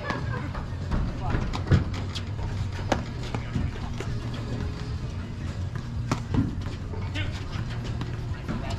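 Paddles hitting a ball back and forth in a doubles rally: sharp single pops a second or so apart, the loudest a little under two seconds in, with two close together around six seconds. A steady low hum runs underneath.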